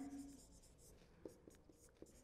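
Faint scratching of a marker pen writing on a whiteboard, in short strokes.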